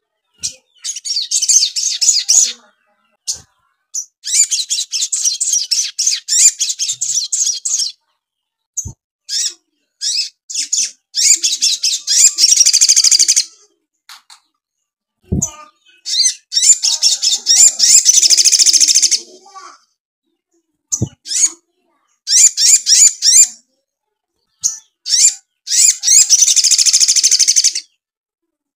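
Caged male olive-backed sunbird (sogok ontong) singing hard: repeated bursts of rapid, high-pitched twittering song, each phrase lasting one to three seconds with short gaps between. The song is filled with house sparrow (gereja) chirps learned from a tutor. A few short low knocks fall between phrases.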